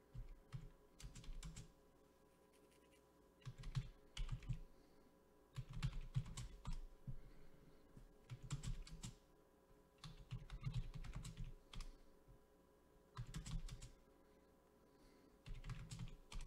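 Typing on a computer keyboard: short bursts of keystrokes, each a second or so long, separated by pauses of a second or two.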